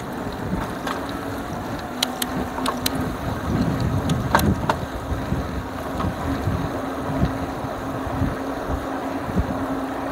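Wind buffeting the microphone of a handlebar-mounted phone on a Lectric XP 3.0 electric bike as it picks up speed on pavement, with rolling road noise. A steady low hum sets in about two seconds in, and a few sharp clicks come in the first half.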